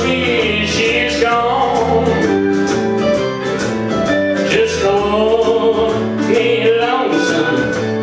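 Country song: a singer's voice over plucked guitar, with a bass line stepping from note to note.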